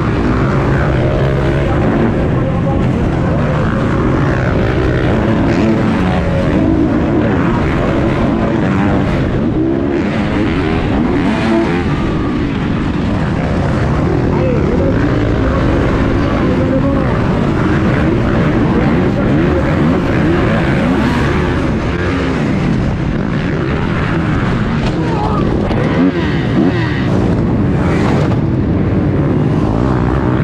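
Several motocross bikes racing on a supercross track, engines revving up and down continuously as the riders work the throttle.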